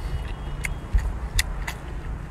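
A few sharp, separate crackles of cooked shellfish shell being pulled apart by hand, and one duller thump about a second in, over a steady low rumble.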